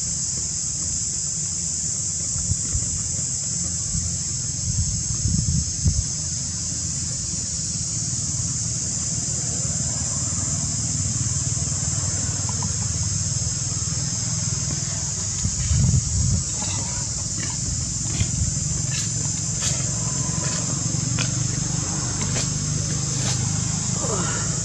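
Steady high-pitched insect drone, such as a cicada chorus, over a low rumble of wind on the microphone. Scattered short clicks come in the second half.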